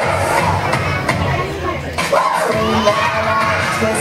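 A crowd of young children shouting and cheering over dance music. About halfway through the music's bass drops away for a moment, then children's voices fill in.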